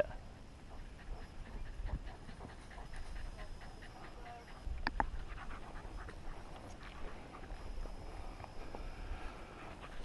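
A gundog panting faintly, with light rustling and one sharp click about five seconds in.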